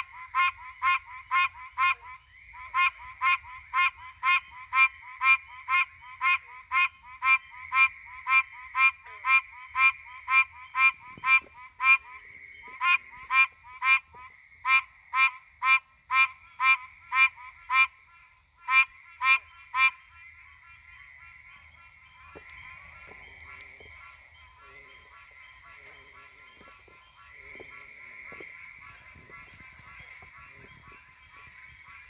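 Pine Barrens tree frog calling: a long run of short nasal honking 'quonk' notes, about two a second with a few brief pauses. The calling stops about twenty seconds in.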